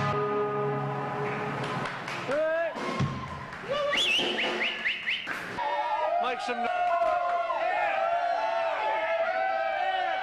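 Live band music dying away, then a concert crowd cheering and shouting, with a shrill whistle about four seconds in.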